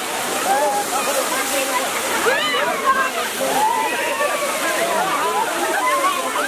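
A strong jet of water gushing and splashing onto people and wet pavement, with a steady rushing hiss. Many voices chatter and shout over it.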